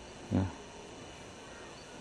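A red stag gives one short, loud, low grunt of a roar about a third of a second in.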